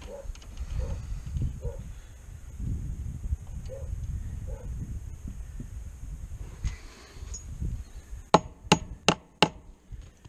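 Fence wire being handled and tightened at a wooden gate post, under a low rumble of wind on the microphone, then four sharp knocks about a third of a second apart near the end.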